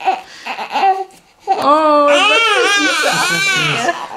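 Newborn baby crying: a long, high, wavering wail that starts about a second and a half in, while his inked foot is held and wiped.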